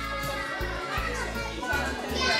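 Children playing and calling out, with music playing under them.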